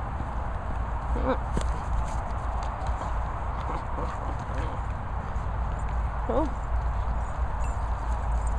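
Steady low rumble of wind on the microphone. A person says a short "oh" about a second in, and near six seconds there is a brief pitched sound that rises and falls.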